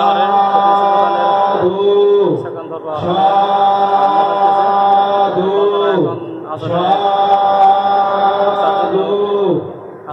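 Buddhist chanting by a single voice, held on long, drawn-out notes in phrases of a few seconds each, the pitch sliding down at the end of every phrase.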